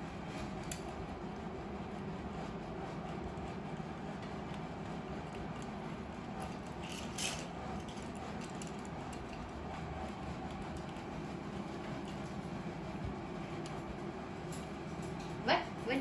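Steady low room hum with a few faint clicks and a brief scrape, the sounds of a parakeet handling and chewing a small plastic toy car on a metal cage top. Just before the end a voice starts, rising in pitch.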